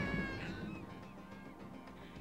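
Background music with a drawn-out wailing cry that sinks slightly in pitch and fades out within the first second. The music then dies away.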